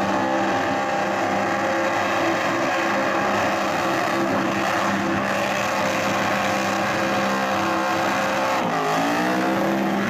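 Supercharged car engine held at high revs through a burnout, over the noise of spinning, smoking tyres. Near the end the revs dip briefly and climb back up.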